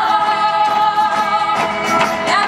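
A women's carnival murga choir singing together, holding long notes, over guitar and drum accompaniment with regular percussion strikes.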